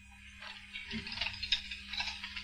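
Faint, light rattling and clicking as a lace curtain on a glass-paned door is pulled aside, starting about half a second in, over a low steady hum.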